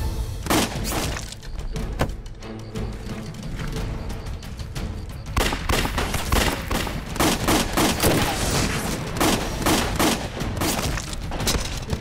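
Dramatic soundtrack music over a dense run of sharp impact sound effects, the hits coming thicker and faster from about five seconds in.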